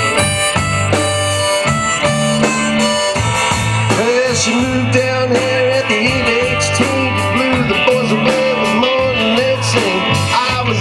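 Live rock band playing: electric guitar and drum kit, with a bending, wavering lead melody coming in about four seconds in.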